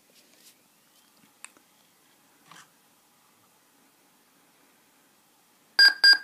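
Dell Latitude D620 laptop starting up: near silence with a faint click, then two quick, loud, high beeps from its speaker near the end as the boot screen warns that the AC power adapter type cannot be determined.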